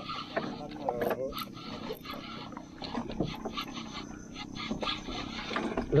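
Small spinning reel being cranked while fighting a hooked needlefish on ultralight tackle, with a few short, excited wordless vocal sounds over it.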